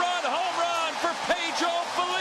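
Baseball stadium crowd cheering a home run: a steady mass of crowd noise with many yells and whoops rising and falling on top, heard through a TV broadcast.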